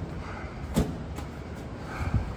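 A steady low mechanical hum with one short knock about three-quarters of a second in.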